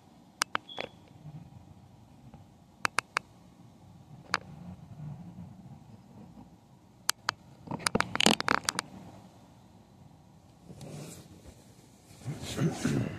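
Handling noise from the recording phone: scattered sharp clicks and taps over a faint low hum, then a quick cluster of clicks and scrapes about eight seconds in.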